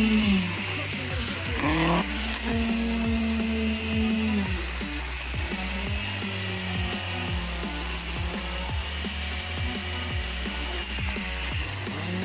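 Concrete pump running as it pushes concrete through its delivery hose, its engine hum dipping in pitch under load near the start and again about four and a half seconds in, with regular knocks throughout.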